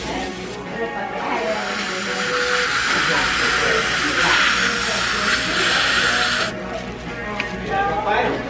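Dental air syringe blowing a jet of air into the mouth, a loud even hiss that starts about a second in and cuts off suddenly some five seconds later, drying the teeth for bracket bonding.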